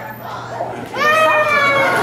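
A toddler starts crying about a second in: one long, high wail.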